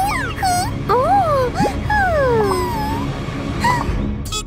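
A cartoon mouse character's voice: about half a dozen high cries, each gliding up and falling away in pitch, one long falling cry in the middle, over background music.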